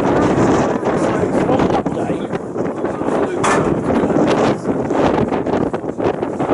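Indistinct voices talking, with wind buffeting the microphone.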